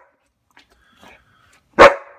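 A dog barking: a single loud, sharp bark near the end, after a mostly quiet stretch.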